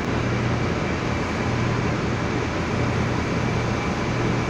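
Diesel-electric locomotive (R136) running steadily as it draws slowly into an underground station, a low even hum over a broad rumble that echoes off the enclosed platform.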